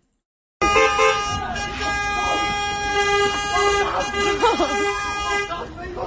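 A car horn held down in one long, steady blast of about five seconds that starts suddenly after a brief silence and cuts off near the end, with people's voices over it.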